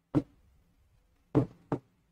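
Marker tip knocking against the writing board while writing: three sharp taps, one just after the start and a close pair about a second and a half in.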